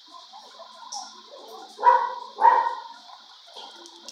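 A dog barking twice, about half a second apart, about two seconds in, over a steady high hiss.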